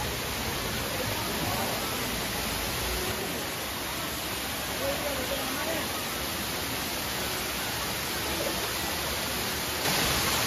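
Steady rushing of a waterfall pouring down a rock face, with faint voices of people in the background.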